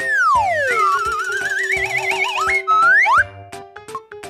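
Cartoon whistle sound effects over background music: a whistle slides down in pitch over about a second, then a wavering whistle climbs slowly, followed by quick upward slides about three seconds in.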